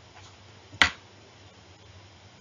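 A single sharp click a little under a second in, over a faint steady low hum.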